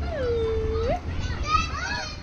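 Children's voices at a playground: one long drawn-out call that lasts nearly a second and rises at its end, then shorter, higher-pitched shouts and chatter from other children.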